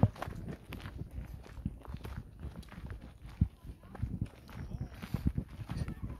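Footsteps on a gravel path at walking pace, an irregular series of short low thuds.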